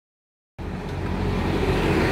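Steady motor-vehicle noise with a low engine hum, starting abruptly about half a second in.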